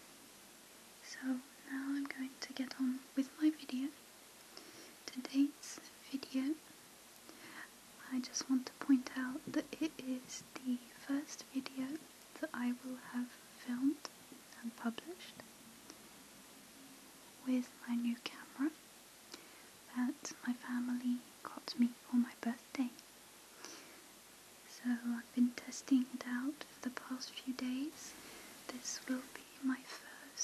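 A woman speaking softly, close to the microphone, in short phrases with brief pauses.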